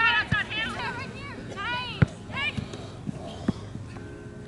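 Voices calling out on a soccer field, with several sharp thumps; the loudest is about halfway through.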